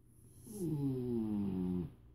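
A bulldog snoring: one long, pitched snore of about a second and a half, starting about half a second in, falling in pitch and then holding steady.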